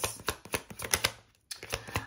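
Tarot deck being shuffled by hand: a quick run of light papery clicks as the cards slip over one another, with a short pause a little past the middle.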